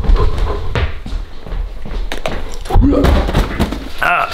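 Rumble and knocks from a handheld camera being carried by someone walking, with several sharp thumps and a brief voice near the end.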